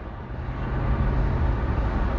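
Low, steady rumble of a car heard from inside the cabin, growing slightly louder about half a second in.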